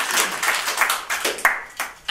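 Audience applauding, a dense patter of many hands clapping that thins out and dies away near the end, with a few last scattered claps.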